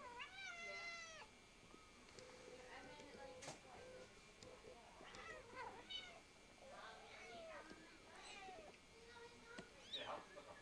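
Newborn kittens mewing: one longer, high cry just after the start lasting about a second, then a series of short, thin mews from about five seconds in.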